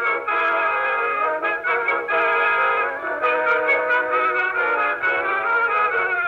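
Music from an early phonograph recording: a band with brass instruments playing a melody, the sound thin with little bass.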